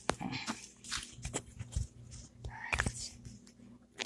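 Handling noise on a phone's microphone: a string of irregular knocks, clicks and rustles as the phone is moved about.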